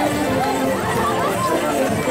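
A crowd talking and calling out over band music with steady held notes.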